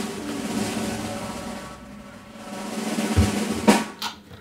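Snare drum roll sound effect, rising in level and ending on a sharp hit near the end, the usual suspense cue before a winner is announced.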